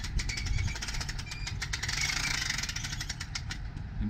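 Manual RV awning's spring-loaded roller retracting, the fabric rolling back up with a fast, continuous run of rattling clicks.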